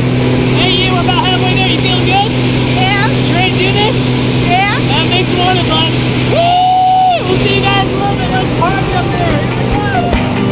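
Steady drone of a small jump plane's engine heard inside the cabin during the climb, with voices talking over it. One voice holds a long call about six and a half seconds in.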